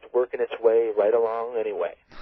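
Speech only: a man talking in a radio interview.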